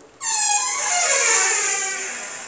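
Door hinge squeaking as the panel door is pushed open: one long, loud squeal that starts a moment in and falls steadily in pitch over about two seconds.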